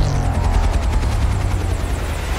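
Film sound effects of a rotor-driven flying craft: a fast rhythmic rotor chop over a deep rumble, with tones falling in pitch, mixed with trailer music.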